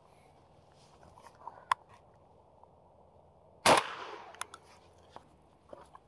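A single 12-gauge shotgun blast from a Beretta A300 Ultima Patrol semi-automatic firing #4 buckshot, about two-thirds of the way in, with a short echo after it. A short click comes about two seconds before the shot.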